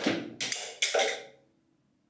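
Three sharp percussive hits, about 0.4 s apart, each dying away quickly, then a sudden cut to silence.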